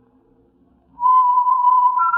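After about a second of quiet, a single clear whistled note starts and is held steady. It is the first note of a radio drama's whistled signature tune.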